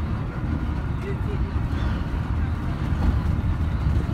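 Interior rumble of a VDL Bova Futura coach on the move: steady low engine and road noise heard from a passenger seat.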